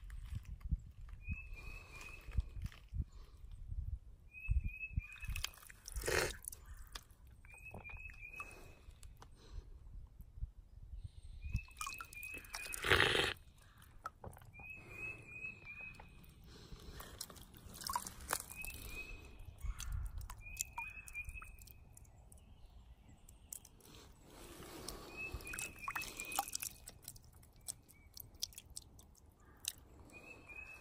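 A bird repeating a short call of three to five quick high notes every second or two, over crackling and crunching on rocky, gravelly ground, with one louder rough burst about 13 seconds in.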